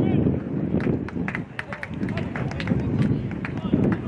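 Outdoor sports-field ambience: a gusting rumble of wind on the microphone, with faint distant shouting from players and a scatter of short, sharp clicks.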